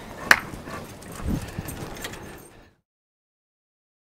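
A single sharp click, like a latch or knock, over faint outdoor background with a softer low sound about a second later; the sound then cuts off to dead silence for the last second or so.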